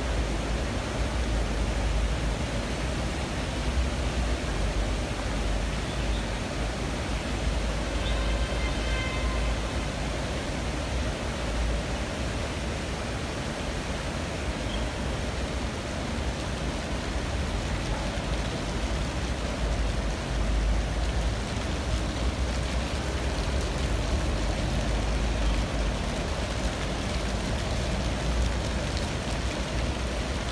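Steady outdoor background noise with a heavy, uneven low rumble, and a brief high-pitched sound about eight seconds in.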